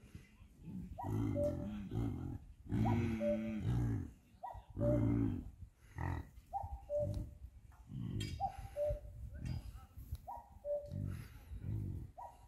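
A herd of domestic yaks grunting: about a dozen low grunts from several animals, one after another and sometimes overlapping, as the herd moves.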